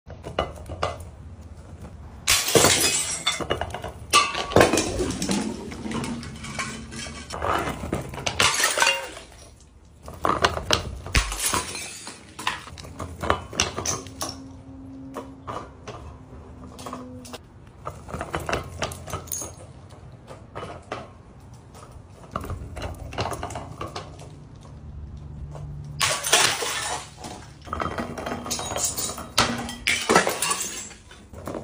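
Glass jars and bottles knocking together, clinking and shattering in repeated bursts, with the loudest clusters of crashes a couple of seconds in, again around eight to eleven seconds, and near the end.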